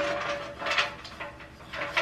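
Stiff dried pampas grass stems rustling and scraping against a tall ceramic vase as they are handled in it, in three short bursts.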